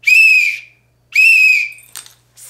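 A police whistle blown in two blasts, each under a second, with the second starting about a second after the first.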